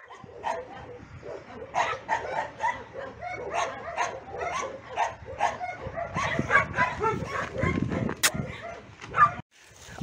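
Shelter dogs barking: a quick, irregular run of overlapping barks, with a sharp click about eight seconds in and a brief cut-off shortly before the end.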